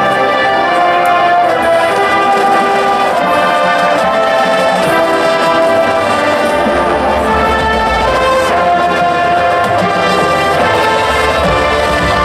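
Marching band playing, its brass holding sustained chords, with deep low notes swelling in about six and a half seconds in and again near the end.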